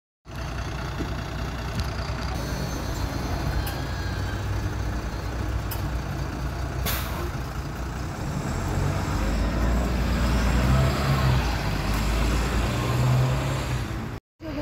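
City bus's diesel engine running at a stop, with a short hiss of released air from the pneumatic system about halfway through. The engine then grows louder in the second half as the bus pulls away.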